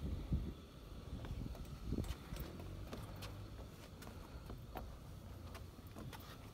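Scattered light knocks and taps as a toddler's hands and shoes touch the metal poles and perforated metal deck of a playground climbing structure, over a low rumble.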